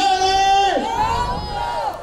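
Several voices shouting a cheer together, one long held call in the first second followed by quieter voices.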